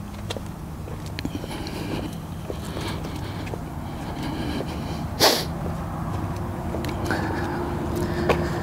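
Footsteps on concrete pavement over a steady low rumble that slowly grows louder, with one short, sharp noisy burst about five seconds in.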